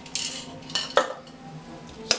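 Metal cocktail shaker and strainer clinking and tapping as the last of a strained drink is shaken out: a few sharp metallic knocks, the loudest about a second in.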